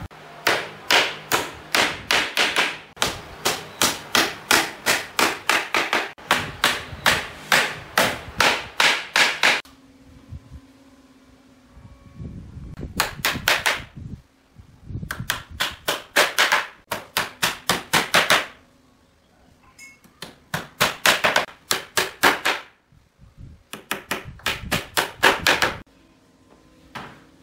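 Hammer striking the wooden boards of a pallet in quick runs of about three blows a second. The first run lasts nearly ten seconds; after that come shorter runs with pauses of one to two seconds between them.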